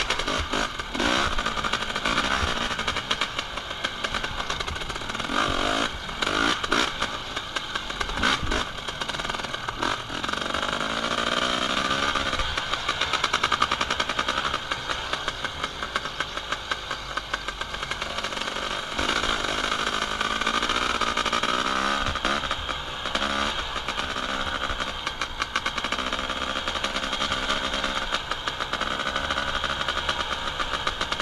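Dirt bike engine being ridden over a rough track, its revs rising and falling as the throttle opens and closes.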